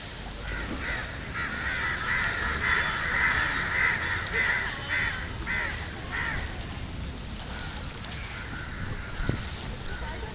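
Crows cawing, a quick series of calls about every half second that thins out after about six seconds.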